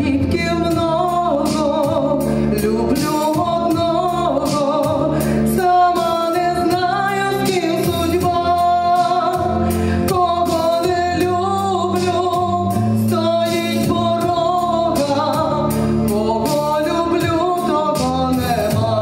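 Women singing a song into microphones over a backing track with bass and a steady beat.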